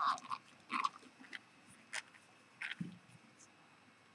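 A few small, scattered clicks and scrapes of metal e-cigarette parts being handled as a tank is worked into place on the mod.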